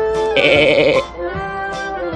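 A cartoon goat character bleats once, a short quavering cry about half a second long that starts a moment in, over background music.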